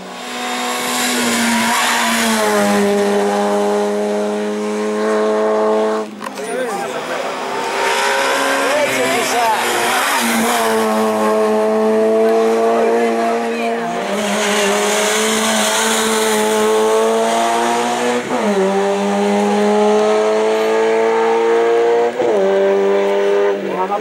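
Peugeot hatchback race car engine accelerating hard uphill. Its pitch climbs steadily and falls sharply at each gear change, several times over.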